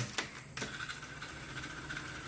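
Ahuja 4040SM cassette deck's piano-key transport buttons clicking as they are pressed, then its tape mechanism running with a faint, steady thin whine.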